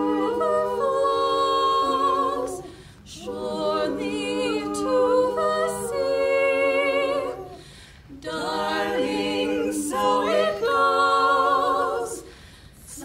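Women's barbershop quartet singing a cappella in close four-part harmony. The singing comes in three phrases, with short breaks about three and eight seconds in.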